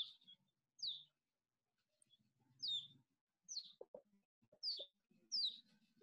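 A bird chirping faintly: six short high chirps, each falling in pitch, about one a second.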